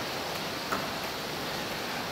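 Steady, even outdoor background hiss with no distinct source, and one faint tick about two-thirds of a second in.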